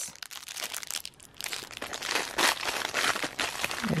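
Plastic wrapper crinkling as a small Funko figure is pulled out of a cardboard advent-calendar compartment and unwrapped. The first second or so is quiet, then a dense run of crackles starts about a second and a half in.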